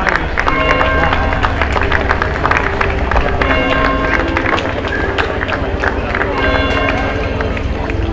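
Outdoor crowd of onlookers, people talking over one another. A steady low rumble of wind sits on the microphone, and music with held notes plays in the background.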